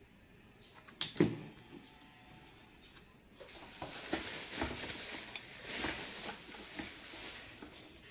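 Hand handling noise: a couple of light knocks about a second in as the cable is set down on the cardboard, then a few seconds of rustling and scraping.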